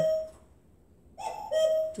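A woman's speaking voice, broken by a pause of under a second of near silence in the middle.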